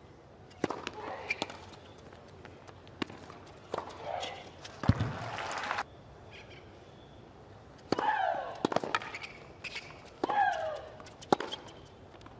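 Tennis balls struck by strings of rackets in quick rallies, sharp single hits about a second apart, several of them with a player's short grunt that falls in pitch. Around five seconds in, a thump is followed by about a second of dense noise.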